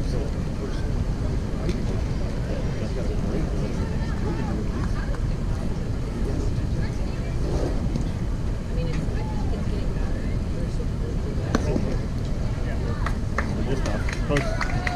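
Outdoor youth baseball game ambience: faint voices of players and spectators over a steady low rumble, with one sharp knock about eleven and a half seconds in.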